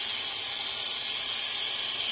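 A lit gas torch melting sterling silver, hissing steadily with an even high hiss.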